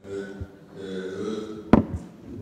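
A low, steady hum comes through the hall's sound system. About three-quarters of the way through, one sharp knock is the loudest sound: a microphone being handled as the next speaker takes over.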